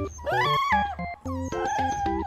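Shiba Inu puppies whining over light background music: one cry rises and falls just after the start, and a second, wavering cry is held near the end.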